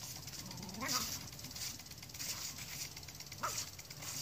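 A Scottish terrier gives two short, faint yelps, one about a second in and one near the end. Under them runs the steady hiss of an aerobic septic system's lawn sprinkler spraying.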